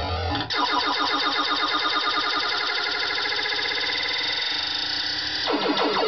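Bally Centaur II pinball machine's electronic sound effects: a fast, rapidly repeating synthesized warble that switches in about half a second in, then changes to a lower, choppier pattern near the end.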